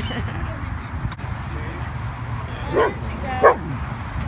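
A dog barking twice near the end, two short barks about two-thirds of a second apart, over a steady low background rumble.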